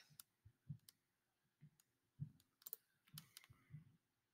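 Near silence with faint, scattered clicks of a computer mouse and keyboard.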